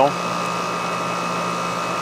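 Outdoor air-conditioning condenser unit running steadily: a fan and compressor hum with a steady higher whine above it. The used replacement unit is running normally and cooling well after being charged with R-22.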